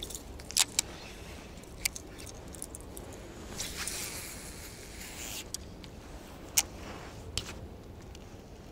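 Baitcasting reel being cast: a few sharp clicks, then a soft rushing whir for about two seconds in the middle as the spool pays out line, and a couple more clicks near the end as the reel is engaged again.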